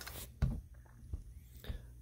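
A few short, faint clicks and ticks in a quiet pause, with a sharper click just after the start and a brief low sound about half a second in.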